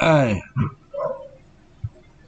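A short vocal sound, about half a second long, falling steadily in pitch, followed by a shorter, weaker sound about a second in.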